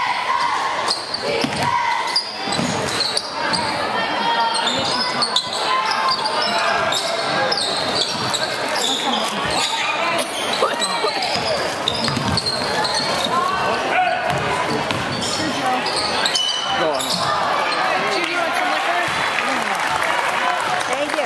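Basketball dribbled on a hardwood gym floor during play, under steady chatter from spectators, all echoing in a large gym.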